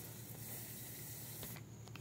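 Faint steady background hiss over a low hum. The highest part of the hiss drops away about a second and a half in.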